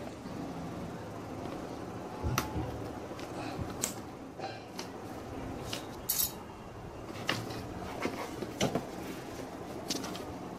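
Unpacking a string-tied cardboard box: metal scissors clicking as the string is cut, then cardboard flaps and packing being handled. It comes as a series of scattered sharp clicks and knocks over a steady low hiss.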